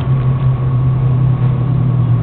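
A steady low machine hum with a thin, faint higher whine above it, and a single sharp click at the very start.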